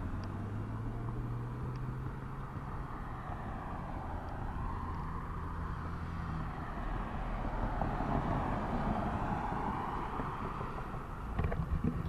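Road traffic at an intersection: a car engine's low hum that ends a little past halfway, and the tyre rush of passing vehicles swelling and fading.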